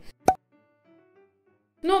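A single short, sharp pop about a quarter second in, a cartoon-style editing sound effect, followed by near silence.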